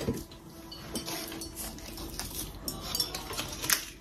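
Ceramic figurines being picked up and handled, giving scattered light clinks and knocks.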